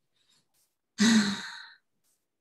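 A person's single voiced sigh about a second in, fading away within a second.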